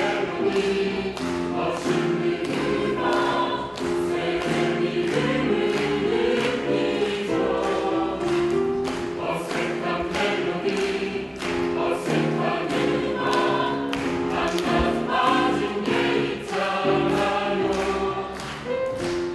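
Mixed choir singing a swing jazz number, men's and women's voices together, over a steady percussion beat.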